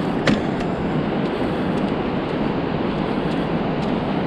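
Steady rumbling wind noise on the microphone, with a single sharp click about a third of a second in.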